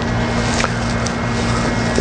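Steady room noise between phrases of speech: an even hiss with a constant low electrical-sounding hum and a faint tick about half a second in.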